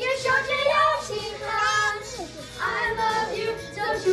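Children singing a Mandarin pop song through handheld microphones, in phrases with a short break a little past the middle.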